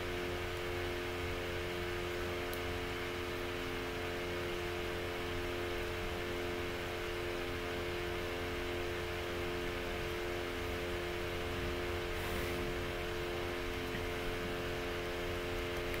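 Steady ventilation hum with several constant tones, one of them pulsing on and off about once a second.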